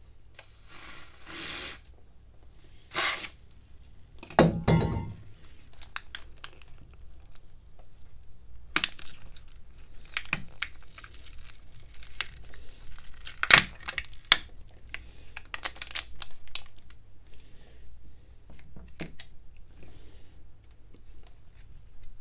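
Two short hisses from an aerosol spray can, a dull thud, then a long stretch of crackling and tearing with sharp clicks as a phone battery is pried up and peeled off its adhesive.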